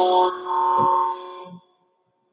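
Live-stream alert chime of several held tones sounding together like a horn chord, shifting to a higher tone about half a second in and fading out about a second and a half in. It signals an incoming super chat donation.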